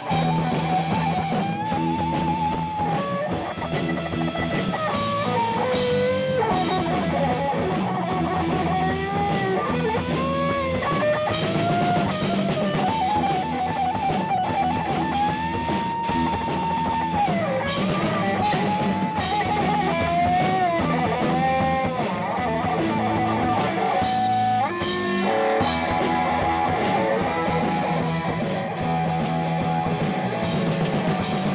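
Live rock band playing loudly: a lead electric guitar solos with bent, wavering notes and a few long held ones over bass guitar and a drum kit with crashing cymbals, with no singing.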